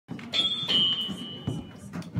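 A small, high-pitched bell dings twice in quick succession, and the second ring fades out over about a second.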